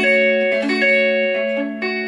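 Clean electric guitar playing a D major 7 chord voiced around the 12th fret, picked one string at a time so the notes ring together over a low A, then picked again near the end.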